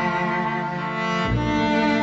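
String music: cellos and violins holding sustained chords, with the bass moving to a new note just over a second in.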